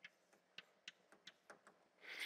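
Faint, irregular taps of chalk on a blackboard, about seven light ticks over two seconds, otherwise near silence.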